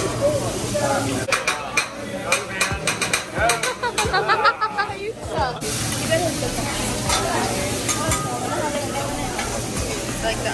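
Food sizzling on a steel hibachi griddle, with a quick run of sharp metal clacks and taps from the chef's spatula on the griddle that starts about a second in and lasts a few seconds. Voices chatter underneath.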